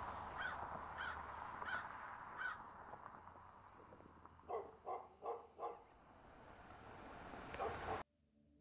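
A bird calling: four evenly spaced calls about half a second apart, then four quicker, lower calls about halfway through, over a faint hiss of wind that fades away.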